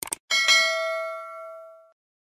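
Two quick mouse-click sound effects, then a notification-bell chime struck twice in quick succession that rings out and fades over about a second and a half: the 'ring the bell' sound of a subscribe animation.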